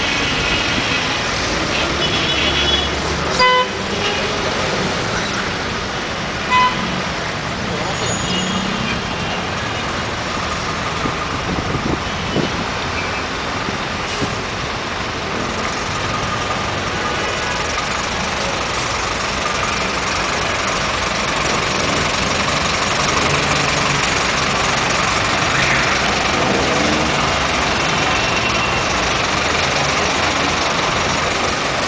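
Congested road traffic: the engines of idling and creeping buses, vans and cars, with car horns honking. Two short, loud horn blasts stand out about three seconds apart in the first few seconds.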